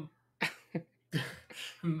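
A man laughing: a few short, breathy bursts of laughter.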